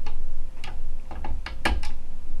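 Light, irregular clicks and low handling bumps as wires are fitted by hand into the screw-terminal block of a relay circuit board, about five clicks in two seconds.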